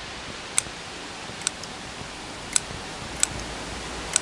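Bonsai pruning scissors snipping thin Lonicera nitida twigs: four sharp snips about a second apart, over a steady hiss.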